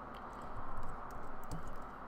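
Computer keyboard keys being pressed, a series of irregular clicks.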